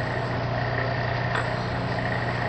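Drill press running steadily while a quarter-inch drill is fed into an aluminium workpiece: a constant motor hum with a steady mid whine and a faint high whistle that drops out for about a second.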